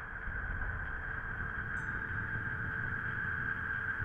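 Synthesized sci-fi 'space wind' drone: a steady windy hiss over a low rumble, with a faint held hum underneath.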